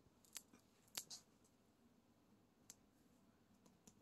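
Near silence with a few faint, sharp clicks of handling: about five, two of them close together about a second in.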